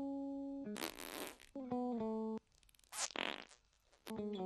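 Musical notes run through the Audio Assault Fart Machine plug-in, which turns them into fart-like tones. Held pitched notes step up and down and are broken twice by noisy, splatty bursts, with a short gap about halfway through.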